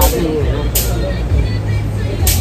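Murmur of voices over a steady low rumble, with two short bursts of hiss, one at the start and one under a second in.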